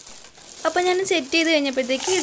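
A woman's voice speaking, starting about a third of the way in, over a light crackling hiss.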